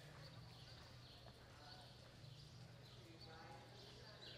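Faint hoofbeats of a ridden horse loping on soft arena dirt, about three strides every two seconds, over a low steady hum.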